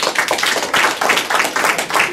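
Audience applauding, many hands clapping densely at once.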